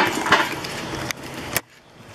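Firewood logs tossed out of a pickup bed, knocking as they land on the log pile: a few sharp wooden knocks, the last and sharpest about a second and a half in.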